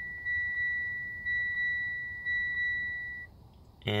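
Mitsubishi Lancer Ralliart's dashboard chime repeating about once a second as the ignition is switched back on. It is one steady high tone, and it stops about three seconds in.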